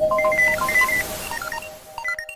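Electronic logo jingle of rapid short beeps jumping between pitches, like telephone key tones, over a held tone and a hiss, growing quieter toward the end.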